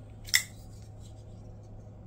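A single sharp metallic click about a third of a second in, as a folding pocketknife is handled. A faint steady low hum runs beneath it.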